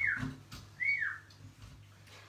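A high whistle: a held note that falls away at the start, then a second short rising-and-falling whistle about a second later, with soft knocks of guitars being handled and set down.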